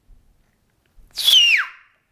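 A person whistling one short note that glides steeply down in pitch, lasting about half a second.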